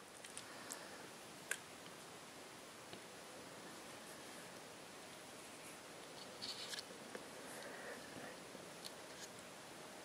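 Faint room tone with a steady hiss, broken by a few light clicks and a short rustle about six and a half seconds in: hands holding and handling a touchscreen smartphone.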